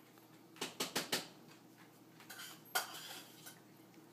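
A few light clicks and knocks on a hard surface: a quick cluster from about half a second to a second in, then fainter taps and one sharper click near three seconds.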